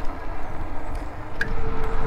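Riding noise of a KBO Flip folding e-bike rolling along a paved path: wind rumbling on the microphone over tyre noise, with a thin steady whine near the end.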